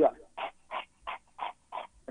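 A man imitating a dog panting hard to cool itself: five quick, breathy pants, about three a second.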